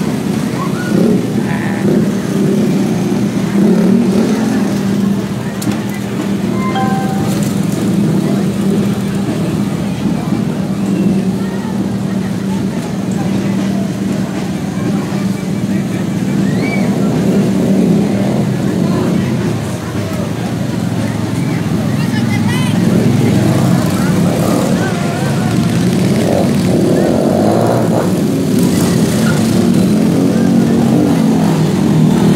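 Stunt motorcycle engines running in the street, with steady crowd chatter mixed in.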